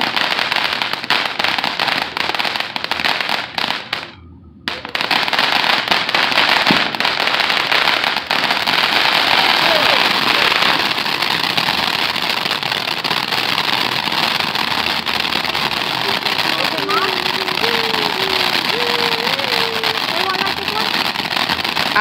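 Ground fountain fireworks spraying sparks: a steady hissing crackle thick with tiny pops. It cuts out for under a second about four seconds in, then carries on.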